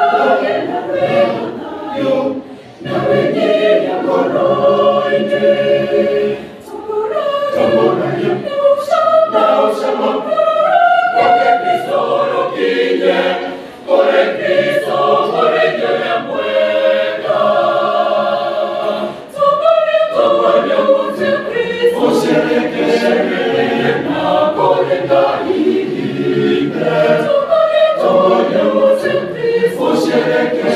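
Mixed-voice church choir singing unaccompanied in Kikuyu, men's and women's parts together in sustained phrases, with brief breaks between phrases every few seconds.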